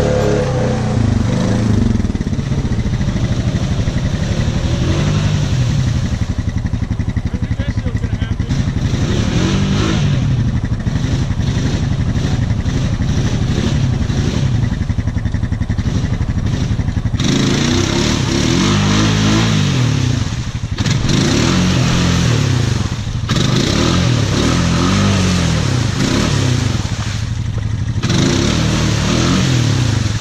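ATV engine revving up and down again and again as the four-wheeler works through a deep mud rut, sounding harsher and noisier from about halfway.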